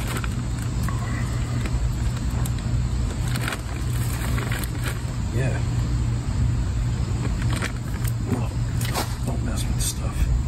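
A steady low hum runs throughout, with scattered small clicks and rustles from hands handling something close by.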